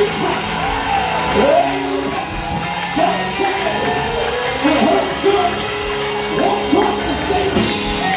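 Live gospel music in a church: held, steady chords with several voices singing and calling out over them.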